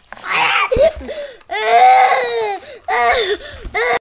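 A young child crying, with one long, held wail about halfway through and shorter broken cries around it.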